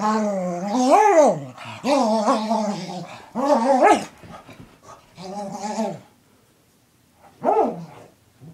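A dog giving a string of long vocal calls that bend up and down in pitch, four in quick succession, then a pause and one short call near the end: the excited carrying-on of a dog worked up after a bath.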